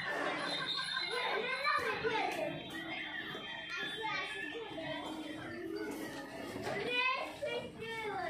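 Voices of several people talking over one another, children's voices among them, with a quick run of high squeals near the end.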